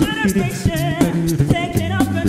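An a cappella vocal group sings in close harmony with vibrato over a sung bass line, kept in time by a beatboxed vocal-percussion beat.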